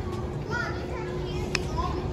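Children's voices: short high-pitched bits of chatter twice, over a steady low hum, with one sharp click about one and a half seconds in.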